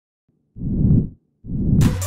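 Logo sting sound effect: two muffled whooshing swells, each about half a second long, with the second running into the first beat of a music track near the end.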